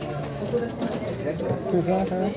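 Indistinct voices of people talking in the background.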